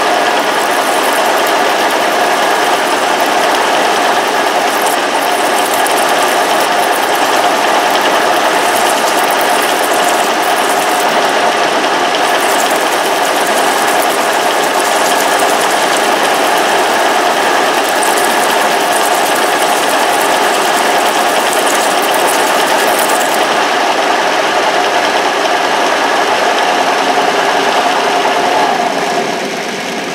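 Milling machine spindle running while a shop-made two-inch, two-flute ball nose end mill plunges into aluminium: a loud, steady machine drone with hum tones and cutting noise. The sound drops off shortly before the end, as the cutter lifts out of the finished dimple.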